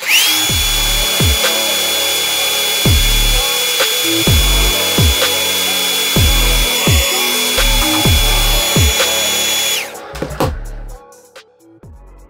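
Hand-held hair dryer switched on, its motor whine rising quickly to a steady high pitch over the rush of air; it runs for about ten seconds and is then switched off, the whine falling away. Background music with a deep, regular beat plays underneath.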